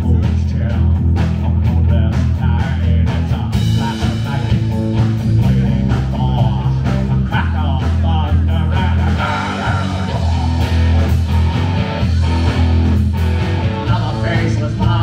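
Live instrumental rock from a three-piece band: electric guitar, upright electric bass and a Ludwig drum kit playing a steady beat. The cymbals come in brighter about three and a half seconds in.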